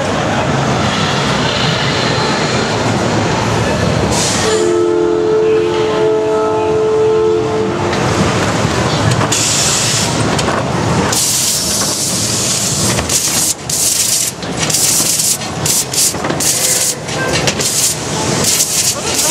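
Haunted attraction sound effects: a dense rumbling noise, then a loud held horn-like chord for about three seconds, then repeated short bursts of hissing air through the second half.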